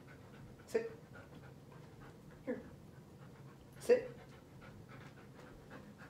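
A Siberian husky panting steadily, with short sounds falling in pitch about one second in and again about two and a half seconds in.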